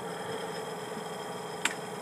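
Engine fitted with a Holley 1850-5 four-barrel carburetor idling steadily at a low, even level. A single sharp click comes about one and a half seconds in.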